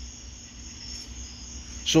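A pause in speech filled by a steady, high-pitched background drone over a low hum.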